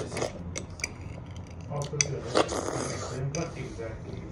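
A spoon clinking against a dish several times in short, separate clicks, with a brief hissing scrape in the second half.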